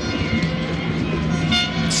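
Stadium crowd noise with a steady horn note held in the stands.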